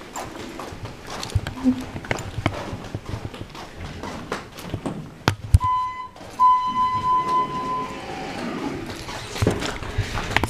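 Footsteps and handling knocks as a handheld camera is carried along a hotel corridor. About halfway through comes an electronic beep: a short tone, then a longer steady one lasting about a second and a half.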